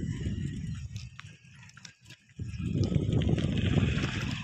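Wind buffeting the phone's microphone while riding a bicycle, an uneven low rumble that drops away for a moment near the middle and then comes back.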